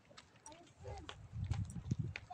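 Handling noise from a handheld phone being turned: irregular low rumble and knocks starting about a second in, with faint voices in the distance.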